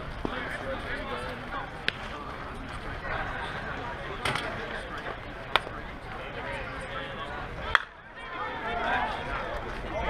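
Softball bat striking the ball with one sharp, ringing crack about three-quarters of the way in, the loudest sound here, followed by players' voices rising. Before it come a few fainter sharp clicks over steady background chatter of voices.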